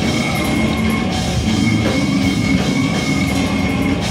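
A brutal death metal band playing live and loud, with distorted electric guitars, bass and a drum kit in a dense, continuous wall of sound.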